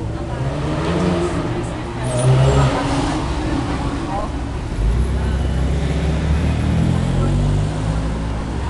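BMW M3 saloon's engine and exhaust as it pulls away along the street, growing deeper and louder about five seconds in.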